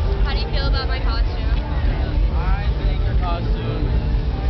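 Voices talking, close to the microphone, over a loud, steady low rumble.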